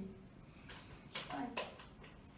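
Quiet room tone with a few faint clicks and a brief murmur of a voice about one and a half seconds in.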